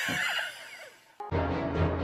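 A loud, shrill cry with gliding pitch cuts off about half a second in. Background music with a steady beat starts just over a second in.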